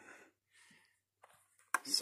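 Quiet room with a faint tick a little past one second and a sharp click near the end.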